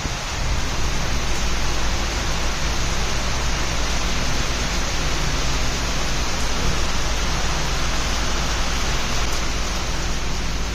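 Heavy rain falling steadily at sea, a dense even hiss of drops on the ship and the water, with a deep rumble underneath that comes up about half a second in.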